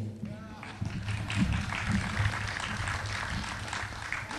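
A small audience clapping at the end of a ukulele song, starting about a second in, with voices talking under the applause.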